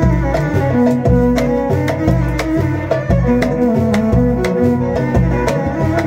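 A violin playing a melody over a steady hand-drum beat and pulsing bass, an instrumental passage of a Moroccan song.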